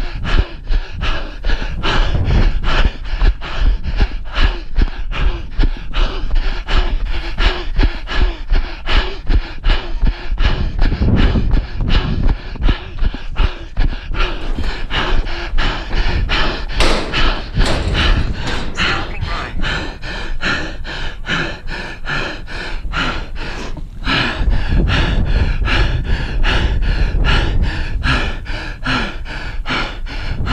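A runner panting hard, one quick gasping breath about three times a second, out of breath from sprinting up a steep stair climb. A low rumble of wind on the microphone runs underneath.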